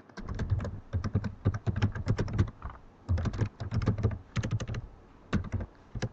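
Typing on a computer keyboard: rapid runs of keystrokes with short pauses between them.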